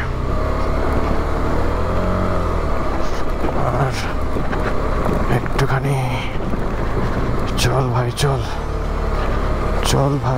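KTM 250 Adventure's single-cylinder engine running at low speed as the motorcycle climbs a rough gravel track, with a steady low rumble throughout.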